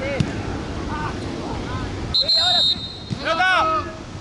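Players shouting on a football pitch, with the thud of a ball being kicked just after the start. About two seconds in comes a brief, loud, high referee's whistle blast, followed by a loud burst of shouting.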